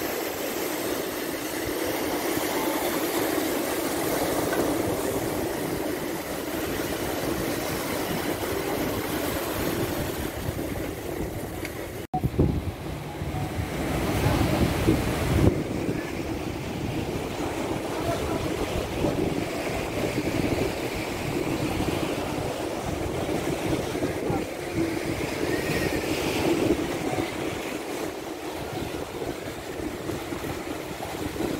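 Sea waves washing and breaking, with wind buffeting the microphone as a continuous rumble. The sound cuts out for an instant about twelve seconds in, and the wind rumble is louder for a few seconds after.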